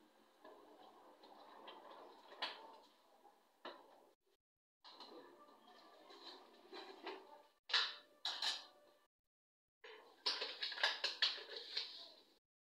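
Milk pouring from a carton into a plastic blender jar, followed by knocks and clatter of kitchen containers being set down and handled, with a quick run of sharp knocks near the end.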